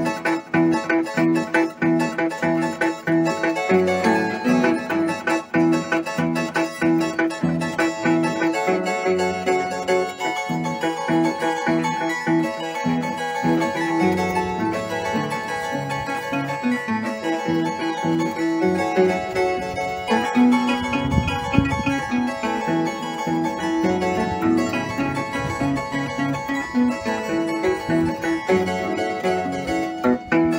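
Peruvian harp (arpa) playing a fast instrumental passage, a quick plucked melody over low bass notes.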